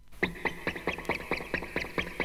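Music from a vinyl LP on a turntable: a new track starts out of the quiet gap between songs about a quarter second in, with a quick run of short staccato notes about six or seven a second.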